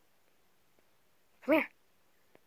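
Near silence, then about one and a half seconds in a single short, sing-song call of 'come here' to a dog.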